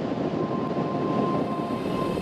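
Steady rush of wind and road noise from a motorcycle on the move, with no clear engine note standing out.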